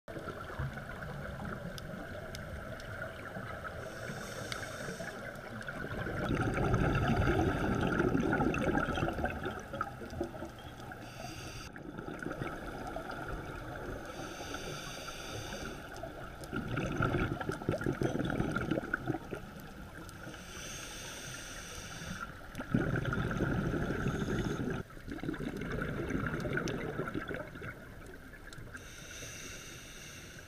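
Scuba diver breathing through a regulator underwater: a short high hiss on each inhale, then a longer, louder rush of exhaust bubbles on each exhale, four or five breaths in all. A steady faint hum runs underneath.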